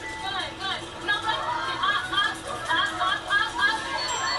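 Chatter of several voices from the playing TV show, with background music under it.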